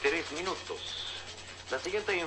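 Speech: a voice talking briefly at the start, then a quieter stretch with a short faint high tone about a second in.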